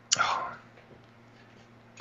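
A man's short breathy exhale, without voice, lasting about half a second and fading, then near silence with a faint low hum.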